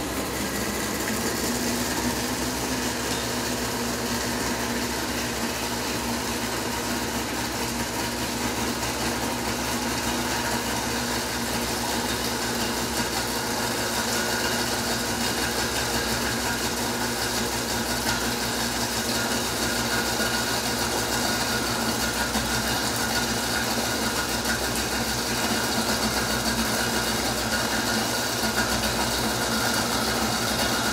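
Countertop blender motor running steadily, stirring a balsamic vinaigrette while canola oil is poured in slowly through the lid so that the dressing emulsifies and does not separate.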